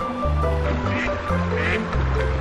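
Background music with a steady bass line, over which a duck quacks twice, about a second in and again near the end.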